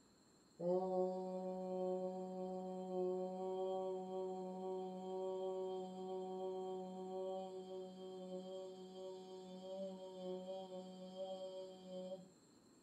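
A chanted mantra: one long note sung at a steady pitch, starting about half a second in and held until the very end.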